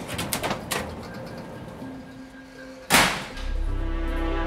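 Clicks and rattles of a keypad door lock's lever handle and latch being worked, over faint background music. About three seconds in comes a loud, short rush of noise, and then low sustained music chords begin.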